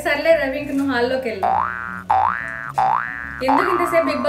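A cartoon 'boing' sound effect played three times in a row, each a rising springy sweep lasting about two-thirds of a second, cutting in between stretches of a woman's talk.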